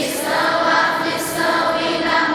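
A large group of children singing a song together, holding long notes.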